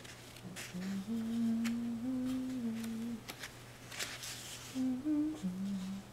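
A person humming a slow tune, holding each note and stepping between pitches, with a pause of about a second and a half midway. Light clicks and a brief rustle come between the notes.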